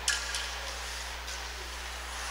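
Quiet ice rink background with a steady low hum, and a few faint clicks in the first half second.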